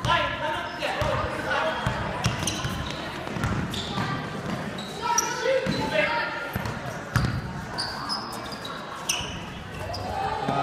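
A basketball being dribbled on a hardwood gym floor, repeated bounces about once a second, with short sneaker squeaks and shouting voices echoing in the hall.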